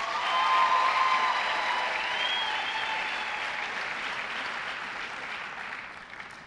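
Audience applauding, swelling about a second in and slowly dying away near the end.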